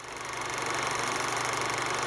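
Steady mechanical whirring with a fast, fine rattle that fades in over the first half second: the sound effect laid under an old-film style "The End" outro card.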